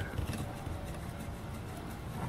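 Low, steady background noise with a faint low rumble and a few faint ticks, and no distinct event.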